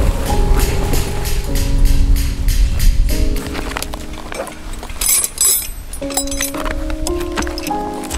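Background music with sustained notes, over which metal tent pegs and tools clink against each other in a gear bag, most clearly about five seconds in.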